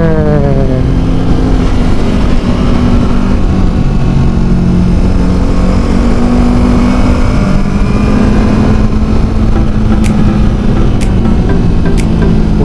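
Kawasaki Versys motorcycle engine running under way, with wind rushing over the microphone. The engine's pitch falls as the throttle is rolled off at the start, then holds fairly steady, and two sharp clicks sound near the end.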